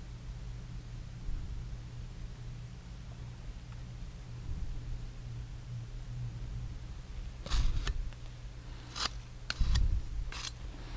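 A steady low hum of the workshop room, then, over the last few seconds, several short sharp scrapes and clicks as a putty knife loaded with epoxy bedding compound is worked against the rim of a small can of putty.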